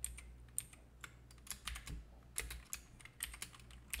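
Computer keyboard typing: a run of irregular, fairly quiet key clicks over a steady low hum.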